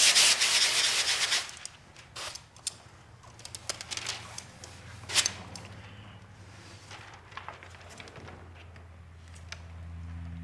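Clear release liner being peeled off a sheet of window tint film: a loud crackling rip for about the first second and a half, then scattered short plastic crinkles as the film is handled. A faint steady low hum comes in about halfway through.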